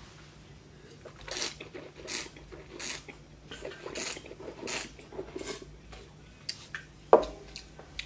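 Wine taster slurping, drawing air through a mouthful of sweet red dessert wine: about six short hissing slurps roughly two-thirds of a second apart, then a brief louder mouth sound near the end.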